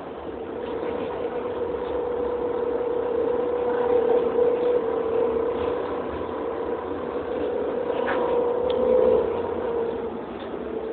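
A city bus's engine running as it drives, heard from inside the passenger cabin: a steady hum with a tone that drifts slightly in pitch, swelling louder about four seconds in and again near the end.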